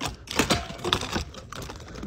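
A run of irregular light clicks and taps, some louder than others, close to the microphone.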